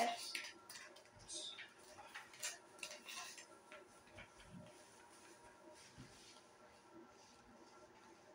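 Soft rustling and handling of a rubber Ghostface mask and black cloth hood as they are pulled over a head, with a cluster of light scrapes and taps over the first three seconds, then faint room tone.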